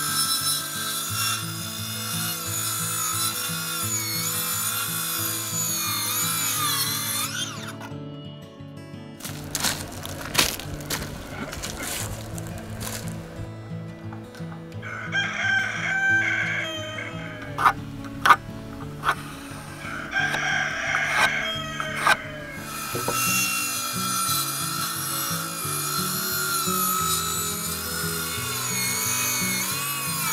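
Cordless circular saw (Craftsman brushless 20V) cutting pine framing lumber, its motor whine wavering in pitch under load over the first several seconds and again near the end, with a few sharp knocks of wood in between. Background music with a stepped bass line plays under it all.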